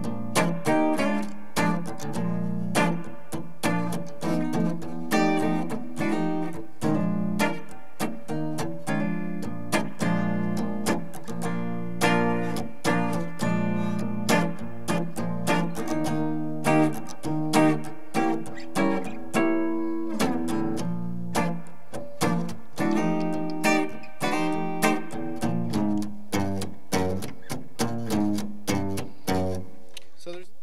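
Semi-hollow electric guitar played with a clean tone: a blues rhythm part of chords struck in a steady, even pulse.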